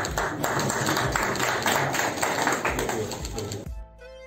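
A group of people clapping and talking together in a room, quick dense claps over voices; near the end this cuts off suddenly and plucked guitar music begins.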